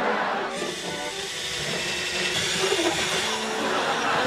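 Electric drill running steadily as it bores through a wall, starting about half a second in.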